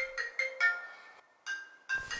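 Smartphone (an iPhone) ringing with a marimba-like ring tone of short, bright notes. The tune breaks off a little past a second in and starts over shortly before the end.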